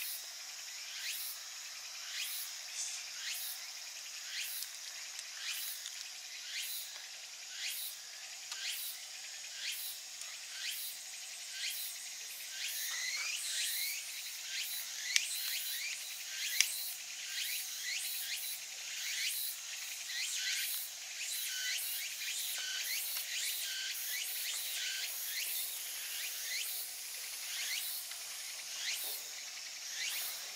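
Insects chirping steadily, a dense chorus of rapidly repeated short high calls. Two sharp clicks stand out about halfway through.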